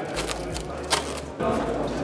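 Indistinct background voices with two short sharp clicks, one at the start and one about a second in.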